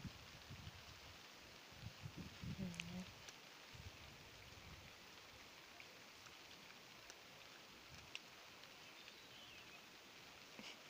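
Near silence with faint light rain and a few scattered drip ticks.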